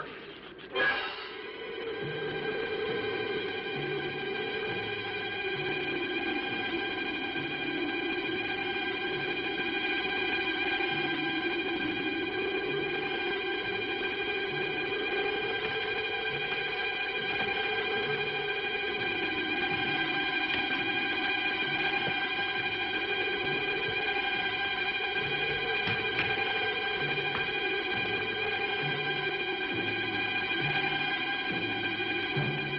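Suspense film score: a held high chord over a slowly wavering mid-range tone and a low pulse about once a second. The score swells in just after a brief sharp sound about a second in.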